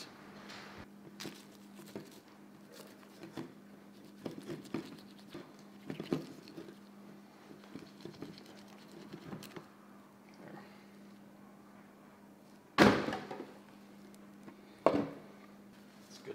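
Knife cutting and scraping through meat and tendon at the last neck joint of a skinned whitetail deer head, with many small scattered clicks and wet scrapes. About 13 seconds in there is a loud thud as the head is set down on the bench, and a sharper knock follows about two seconds later.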